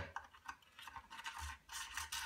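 Aluminium extension rod being pushed and twisted into a snug 6 mm bore, scraping and rubbing metal on metal in several short, irregular strokes. The tight fit is why it scrapes.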